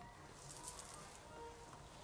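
Near silence: room tone, with a few faint, brief steady tones.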